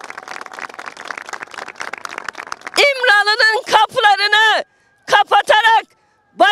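A small crowd applauding for about three seconds. Then a woman speaks again in a raised, high-pitched voice.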